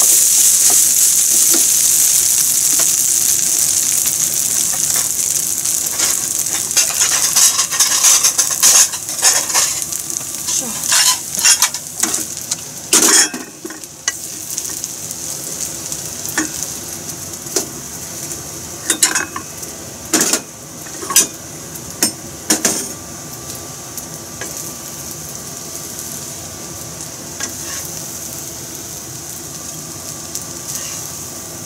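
Fried rice sizzling in a frying pan while being stirred with a wooden spatula. The sizzle weakens after about 13 seconds, and sharp scrapes and knocks of the spatula follow as the rice is scooped out onto plates.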